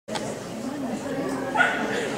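A dog barks once about a second and a half in, over people chattering in a large hall.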